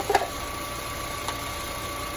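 2007 Honda Civic's 1.8-litre four-cylinder engine idling steadily, with a short clatter right at the start. The engine is running with an alternator that is not charging the battery.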